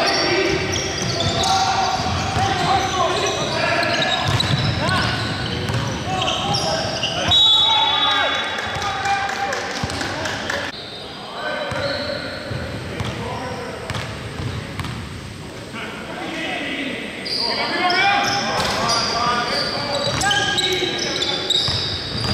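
A basketball bouncing on a hardwood gym floor during play, with players' voices calling out, all echoing in a large gym. The sound eases briefly around the middle.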